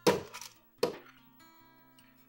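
Three sharp knocks of a plastic measuring cup tapped against a plastic blender jar to shake out soaked, drained oats, over soft acoustic guitar background music.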